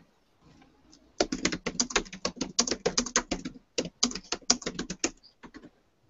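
Typing on a computer keyboard: a quick run of keystrokes that starts about a second in, pauses briefly past the middle and stops shortly before the end.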